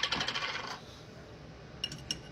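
Metal jar lid dropped onto a hard tabletop, rattling and wobbling to rest in a quick run of ringing clicks that die away within the first second. A couple of light metallic clicks follow near the end.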